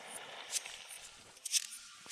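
Water splashing and settling in a river just after someone jumps in, with two sharp clicks about a second apart.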